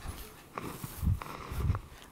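Muffled low thumps and rustling of a microphone being handled, twice, about a second in and again shortly after.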